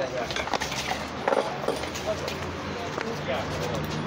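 Indistinct voices and chatter of a small group, with a low steady hum coming in during the second half.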